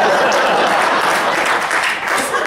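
Audience applauding, loud and steady.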